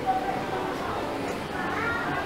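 Indistinct chatter of people in an enclosed room, with a brief high cry near the end that rises in pitch.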